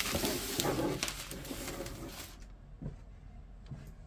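Wax paper rustling and crinkling as a sheet is slid across the workbench, stopping a little over two seconds in. A few soft taps follow.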